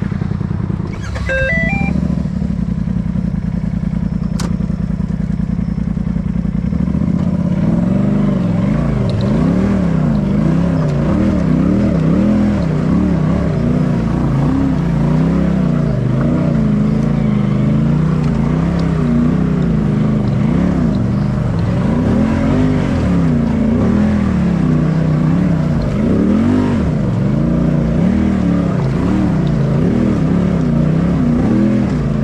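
Polaris RZR side-by-side engine idling steadily, with a short rising run of beeps about a second in. From about seven seconds the engine revs up and down over and over as the machine crawls over rocks.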